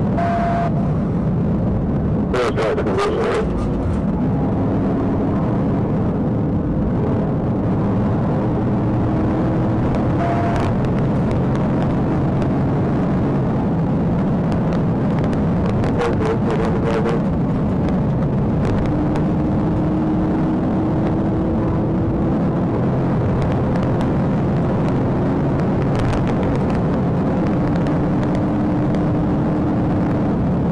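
Police cruiser in a high-speed pursuit at about 110 mph, heard from inside the car: a loud, steady rush of engine, tyre and wind noise, with a few brief clicks.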